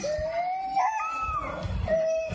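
A toddler's long, drawn-out whining cry, rising slowly in pitch and stepping higher about a second in, with a shorter cry near the end.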